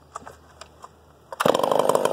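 Stihl MS650 two-stroke chainsaw: a few faint clicks of handling, then the engine fires suddenly about one and a half seconds in and keeps running loudly.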